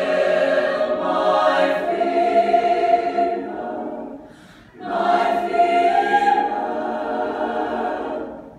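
Mixed choir of teenage voices singing unaccompanied in sustained chords. The phrase fades out about four seconds in, and after a brief pause the voices come back in together on a new held chord.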